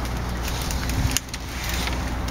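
Steady low background rumble, like distant road traffic, with one short knock a little over a second in.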